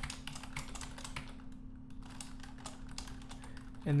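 Typing on a computer keyboard: quick, irregular keystrokes with a short pause a little before the middle.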